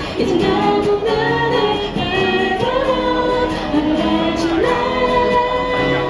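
Two women singing together in held, sustained lines, accompanied by strummed acoustic guitars.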